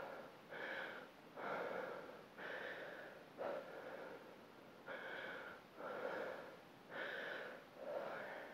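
A woman breathing hard and rhythmically from exertion during a dumbbell deadlift set, about one breath a second.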